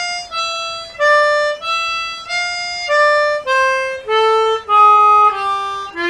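Chromatic harmonica playing a blues lick: a run of single held notes, each about half a second long, stepping mostly downward in pitch.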